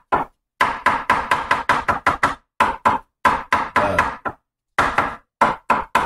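Cleaver dicing mushrooms on a wooden cutting board: quick runs of sharp knocks as the blade strikes the board, several a second, broken by short pauses.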